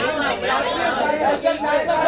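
Several people talking over one another at once, a loud, indistinct chatter of voices in a large hall.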